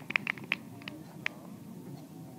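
Scattered handclaps from a small golf gallery, a quick run of separate claps that thins out after about a second, applauding an approach shot that has finished close to the pin.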